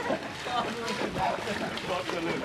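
Legs wading through knee-deep water in a flooded rice paddy, sloshing and splashing with each stride.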